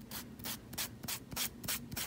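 A nail file scraping down over the edge of a fingernail in quick, short, even strokes, about three a second. It is filing off the overhanging end of a gel nail strip so that it breaks away without cutting.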